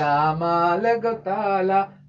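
A man singing a drawn-out, wavering melodic line in a few long phrases with short breaks, unaccompanied, in a chant-like improvised style; the voice stops just before the end.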